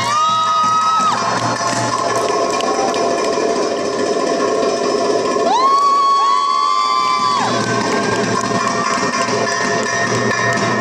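Darbuka (doumbek) hand drumming in a fast, dense solo, with an audience's long high-pitched whoops over it: one at the start, and two overlapping whoops from about halfway through, lasting around two seconds.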